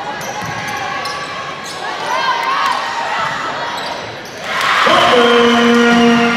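Basketball game play on a hardwood gym floor: a ball dribbling and shoes squeaking among shouting voices. About four and a half seconds in, a loud steady gym horn sounds and holds.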